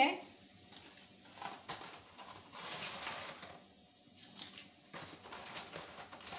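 Water boiling in a pot as dry lasagna sheets are slipped in: a faint, uneven bubbling hiss with a few soft bursts.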